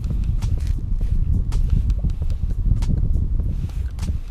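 Steady low wind rumble on the microphone, with irregular light clicks and rustles from the angler handling his spinning rod and reel.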